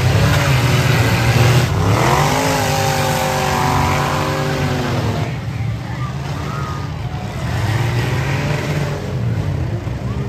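Several demolition derby cars' engines running and revving together, with a deep rumble underneath. About two seconds in, one engine revs up sharply, holds high for a few seconds, then drops off.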